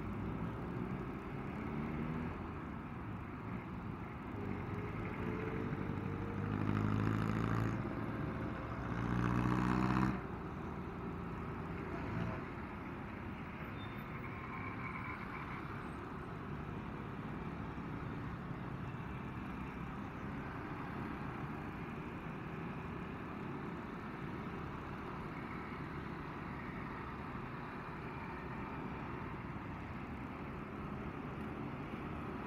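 Motorcycle engine accelerating, its pitch rising twice as it pulls through the gears, the second pull the loudest, then dropping away suddenly as the throttle closes. After that a steady rush of engine, wind and road noise while cruising.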